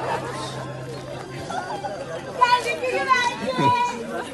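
A group of people talking and calling out over one another, with a loud, pitched voice shouting in the second half. A low steady hum stops about a second and a half in.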